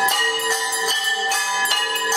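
Temple bells rung continuously for aarti: rapid repeated strikes, a few each second, with the ringing of each overlapping the next.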